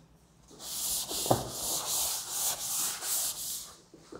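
A chalkboard eraser (duster) rubbed back and forth across a blackboard to wipe off chalk writing, in quick scrubbing strokes at about three a second that stop just before the end.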